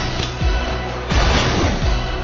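Action film score with deep, heavy beats about every 0.7 seconds, mixed with fight sound effects: a loud crashing burst about a second in.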